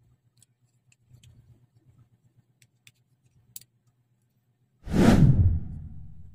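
A few faint clicks of plastic model-kit parts being handled, then about five seconds in a loud whoosh sound effect that sweeps down in pitch and fades away.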